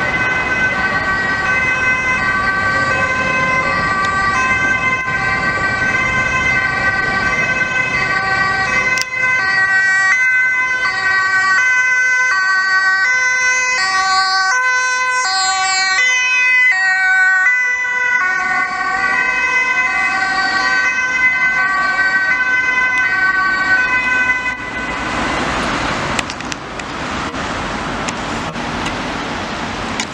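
Dutch ambulance siren sounding as the ambulance drives on an emergency run, its tones switching back and forth between two pitches. About 25 seconds in the siren fades under a rush of traffic noise.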